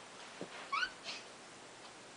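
Mostly quiet room, with one brief, high-pitched rising squeak from a toddler's voice about three-quarters of a second in.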